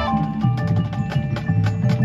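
High school marching band in a percussion-led passage: mallet keyboards and low bass notes under a steady clicking beat about four times a second, with the sustained horn chords gone. The full band comes back in right at the end.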